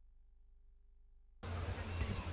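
Near silence with a faint steady hum, then, about one and a half seconds in, open-air sports-field ambience cuts in: a fluctuating low rumble like wind on the microphone, with faint short high chirps.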